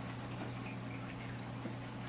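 Steady low hum of room tone, with a faint rustle of cotton fabric being unfolded by hand.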